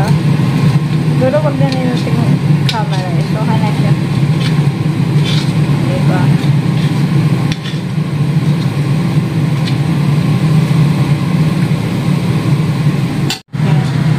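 Steady low hum of a kitchen fan, with bananas and sugar frying in oil in a wok and metal tongs clicking against the wok a few times.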